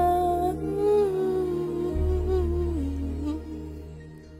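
Female singer holding one long note over a soft backing track at the close of a sung line. The note steps down in pitch nearly three seconds in, and the music drops low near the end.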